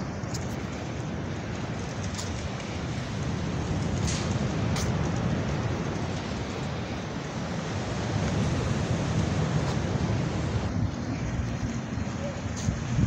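Wind buffeting the microphone in a steady, rumbling rush that swells and eases, with surf from the nearby sea mixed in.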